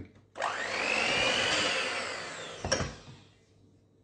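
Electric hand mixer with wire beaters running in a stainless steel bowl, beating a wet margarine, sugar and orange-juice mixture. Its motor whine rises in pitch as it spins up. Near the end there is a sharp click, and the motor runs down.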